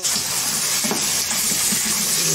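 Diced ham and peas sizzling in hot oil in a wok, stirred with a wooden spoon: a steady frying hiss that starts suddenly.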